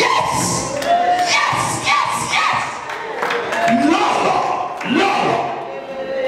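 A crowd of guests cheering and shouting over one another, with scattered hand claps.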